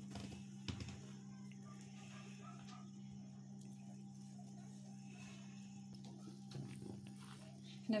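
Faint soft rubbing and squishing of hands mixing flour into a sticky butter dough in a bowl, over a steady low electrical hum.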